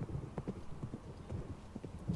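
Hoofbeats of a ridden horse coming along a dirt track: a quick, steady run of clops.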